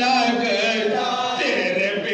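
Several men's voices chanting a soz-o-salam, an unaccompanied Urdu devotional lament, in long held melodic lines.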